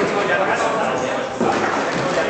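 Chatter of many voices echoing in a large sports hall, with the hard knocks of a table-football ball and rods, one sharp knock about one and a half seconds in.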